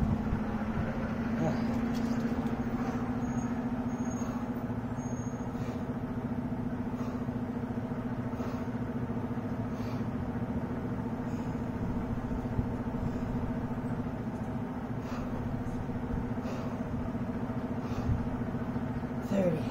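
A steady low mechanical hum, with faint short sounds repeating about every second and a half.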